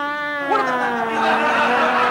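Long, drawn-out wailing cries from a person's voice, held at one pitch, with a second wailing voice joining about half a second in.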